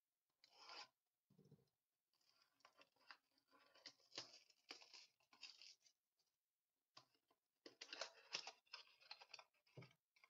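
Faint tearing and rubbing as a cardboard trading-card mini box is pried open by hand, in two spells of crackly handling noise with a short pause about six seconds in.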